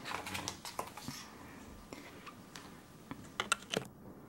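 Pages of a glossy photobook being turned and handled: soft paper rustles and scattered light clicks, with a few sharper clicks near the end.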